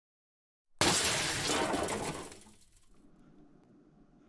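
Shattering-glass sound effect: a sudden loud crash about a second in that holds for about a second and a half, then fades away.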